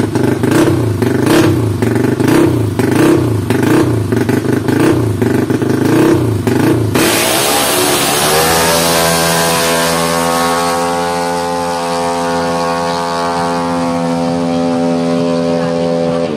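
Yamaha NMAX/Aerox-type CVT drag scooter engine, revved up and down in repeated blips, about three every two seconds, while held at the start line. About seven seconds in it launches: the revs climb quickly, then hold at a steady high note as the CVT shifts and the scooter pulls away, the pitch sinking slowly as it goes.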